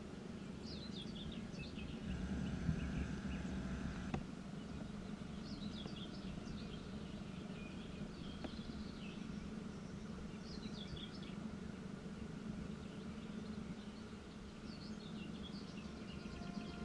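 Field ambience: a songbird repeating a short, quick song phrase about every five seconds over a steady low background rumble.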